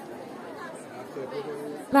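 Chatter of a dense crowd of shoppers, many voices talking at once with no single voice standing out.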